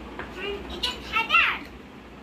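High-pitched child's voice calling out in short wordless bursts, the loudest about a second and a half in.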